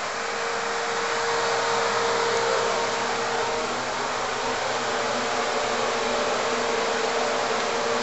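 Steady whooshing air noise with a constant hum, as from a ventilation fan running.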